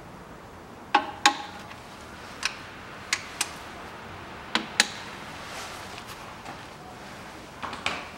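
Sharp metallic clicks and clinks, about nine of them and mostly in pairs, a couple ringing briefly, as hands work metal parts around the engine's timing-belt sprockets and pulleys while fitting the new timing belt.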